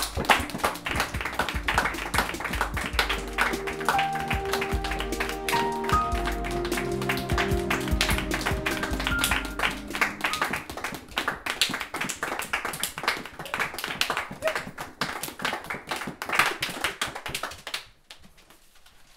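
A small group of people clapping, a dense patter of hand claps, over music with a few held notes.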